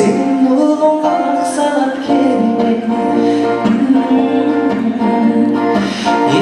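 A man singing into a microphone while playing an acoustic guitar, a continuous song with the voice over the guitar.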